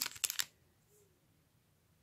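A few light handling clicks in the first half second, then near silence.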